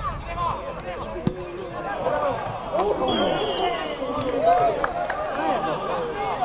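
Overlapping voices of players and spectators calling out during a football match, with a couple of sharp thuds of the ball being kicked.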